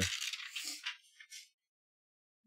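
A sheet of paper rustling as a small circuit board and its cable are handled and set down on it: a light rattling rustle with a few clicks that fades out about one and a half seconds in.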